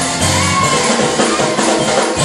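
Loud live gospel praise music with a drum kit playing.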